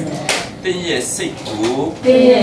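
A man speaking in a lecturing voice, in a small room.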